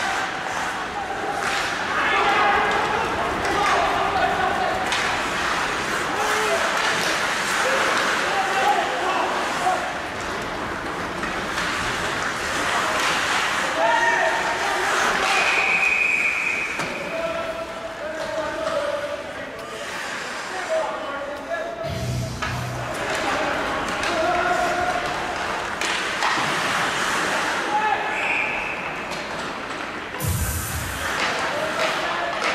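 Ice hockey game sound in an echoing, near-empty arena: players' shouts and calls with stick and puck knocks on the ice and boards. About halfway through, a referee's whistle blows for about a second, stopping play after a goalmouth scramble.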